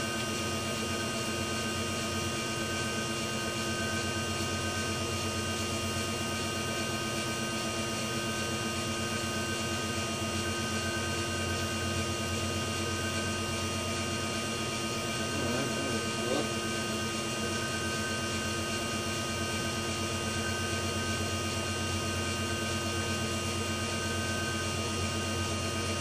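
Electric drive motor turning a ZF 5HP24 automatic gearbox in fifth gear, with the wheels spinning freely off the ground at a steady speed. It gives a steady hum of several fixed tones over a constant whirr of gears and tyres.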